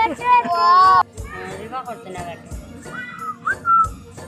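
Young children's high-pitched excited voices and squeals, without clear words, over steady background music, with a thin high whistle-like tone gliding near the end.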